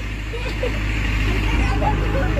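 A steady low engine hum, with faint distant voices.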